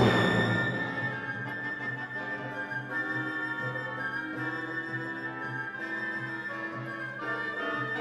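Symphony orchestra playing: a loud accent at the very start dies away into a quieter passage of held notes, with one high note sustained for a few seconds.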